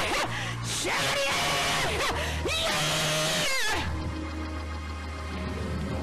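Church praise-break music: a fast band groove with loud clapping and shouting from the congregation. A little under four seconds in, the clapping and shouting fall away, leaving held chords over a steady bass line.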